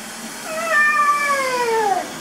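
A baby's fussy cry: one long wail that starts about half a second in and slides steadily down in pitch.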